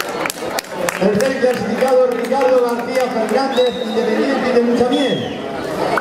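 Crowd chatter: several people talking over one another, with a few sharp clicks in the first second.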